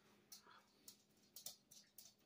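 Near silence: quiet room tone with a faint hum and a few faint, short ticks.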